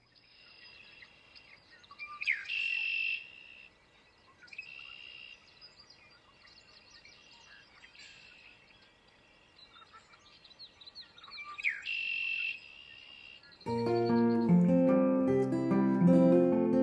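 Red-winged blackbird singing, with fainter chirps in between. Two loud conk-la-ree phrases, each a sharp note followed by a buzzy trill, come about two seconds in and again about twelve seconds in. Near the end an acoustic guitar starts strumming and becomes louder than the bird.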